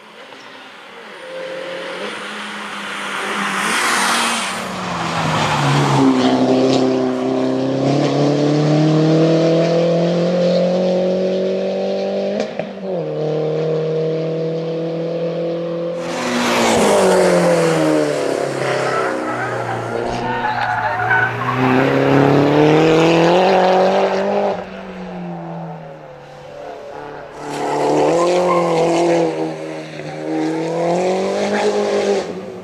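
Mini Cooper S race car engine pulling hard uphill, its pitch climbing steadily and dropping sharply at gear changes, with surges of tyre and engine noise as the car passes close by.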